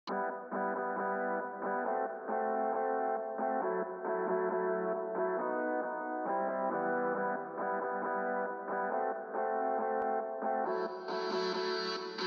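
Instrumental alternative rock beat opening on an effects-laden electric guitar line, its notes changing every half second or so, sounding dull with the top end cut. A brighter hiss joins about a second before the end.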